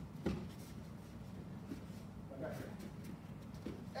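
Two barefoot wrestlers grappling on foam mats in a large hall, with low background noise and one short, sharp knock just after the start. A man calls out "hey" at the very end.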